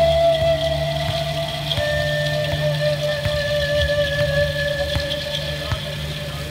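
Andean pan-flute music closing on a long held note that steps down in pitch about two seconds in and is held to the end, over a steady low drone, with a few faint rattles.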